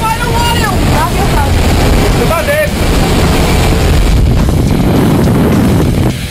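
Jump plane's engine and propeller noise, loud and steady, heard from inside the cabin, with voices shouting over it in the first few seconds.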